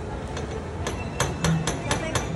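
A quick run of sharp knocks or taps, about four a second, beginning about a second in, over steady outdoor background noise.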